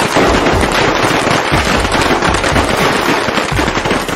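A string of firecrackers going off: a loud, unbroken crackle of many rapid small bangs.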